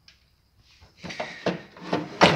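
A few short knocks and rattles as parts are handled inside an open pinball machine cabinet, starting about halfway through after a near-silent moment.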